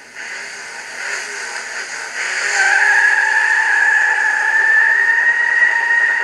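Car tyres squealing, played back through laptop speakers: a hiss that builds up, with a steady high squeal setting in about two seconds in and holding.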